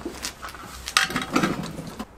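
Light knocks and metallic clinks of equipment being handled beside a welder, over a faint low steady hum.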